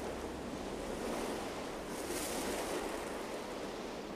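Wind blowing steadily across desert sand: a soft, even rushing noise that swells slightly about two seconds in.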